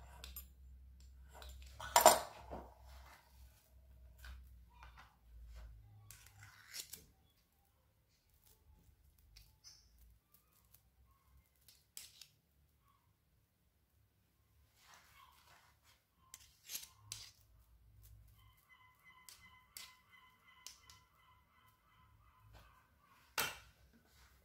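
Small kitchen handling sounds: a pastry wheel cutting slits in puff pastry on a wooden board, with a sharp knock about two seconds in. Then a spoon scraping and dabbing soft cheese onto the pastry, with scattered clicks and a short knock near the end.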